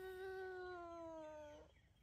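A young girl's long wailing cry: one held note that sags slightly in pitch and breaks off shortly before the end.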